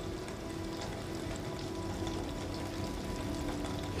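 Quiet background film score: a few soft sustained notes held over a steady hiss.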